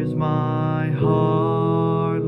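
A man singing long held notes over a sustained instrumental accompaniment, moving to a new note about a second in.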